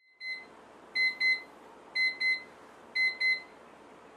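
Electronic alarm beeping: one short high beep, then pairs of quick beeps about once a second, three pairs in all, over faint room hiss.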